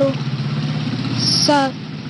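An engine idling steadily in the background, a low even hum, under a boy's speech that comes in briefly at the start and again about one and a half seconds in.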